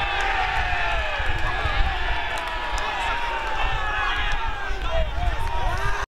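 Field sound of an amateur football match: several voices calling and shouting over one another, with a steady low wind rumble on the microphone.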